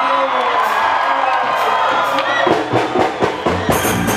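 Large crowd cheering and shouting over loud live music, with sharp drum-like hits coming in during the second half.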